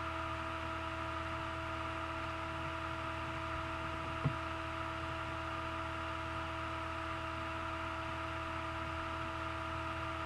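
Steady electrical hum and faint hiss of a recording's background noise, with a few constant tones. A single short click about four seconds in.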